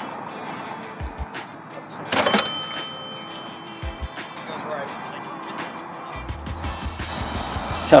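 A short golf putt holed: a sharp click about two seconds in, followed by a brief metallic ring as the ball drops into the cup.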